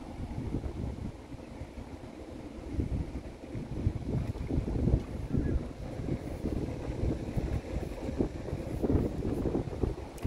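Wind buffeting the microphone in uneven gusts, a low rumble that swells about three seconds in and again near the end.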